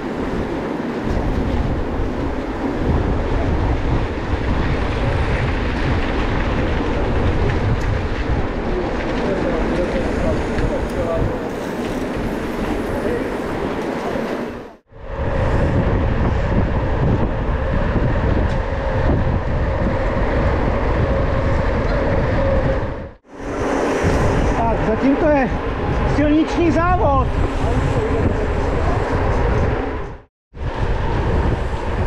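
Wind buffeting the microphone of a handlebar camera on a mountain bike riding at speed in a pack of riders on tarmac, with tyre noise and voices of nearby riders mixed in. The sound breaks off for a moment twice.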